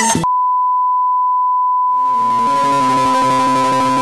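Music cuts off abruptly and a steady 1 kHz sine test tone takes over, the reference tone that goes with television colour bars. About two seconds in, music starts beneath the continuing tone.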